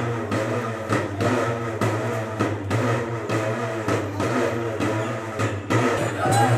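Traditional temple drums beating a slow, even rhythm, about one stroke every second, over a steady low drone.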